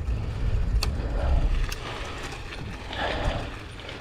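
A hybrid bicycle rolling over a wooden boardwalk and onto a gravel path, its tyres and the passing air making a steady low rumble, with a couple of sharp clicks about one and two seconds in.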